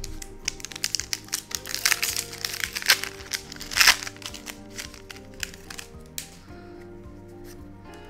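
A foil Pokémon trading-card booster-pack wrapper crinkling and crackling as the cards are handled. The crackle is densest in the first half, with a loudest burst near the middle. Steady background music plays underneath.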